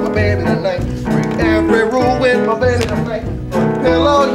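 Live band music for a song-and-dance number: a wavering melody line over bass, with regular percussion strokes.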